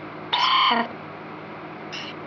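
Necrophonic ghost-box app on a tablet playing a steady white-noise hiss. About a third of a second in, a short pitched, blip-like fragment from its sound bank cuts through for about half a second, and a briefer, higher blip comes near the end.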